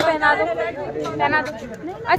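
People talking: voices in conversation, with no other sound standing out.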